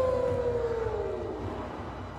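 Film soundtrack tone: one sustained note that glides downward in pitch over about a second and a half while fading, over a low rumble.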